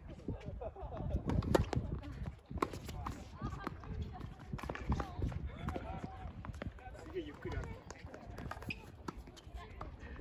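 A doubles tennis point on a hard court: sharp racket strikes and ball bounces, players' footsteps, and players' voices calling out.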